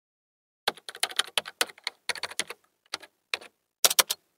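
Computer keyboard typing sound effect: a quick, uneven run of key clicks that begins just under a second in, thinning to a few separate clicks near the end.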